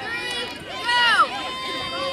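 Voices on the sideline and field calling out, high-pitched and without clear words, with one loud rising-and-falling call about a second in.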